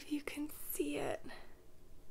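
A woman speaking softly, close to a whisper, in short broken phrases that trail off about halfway through.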